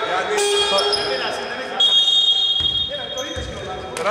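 A referee's whistle in two long blasts, one ending just after the start and the next beginning a little under two seconds in, in a reverberant gym. A basketball bounces on the hardwood a couple of times near the end.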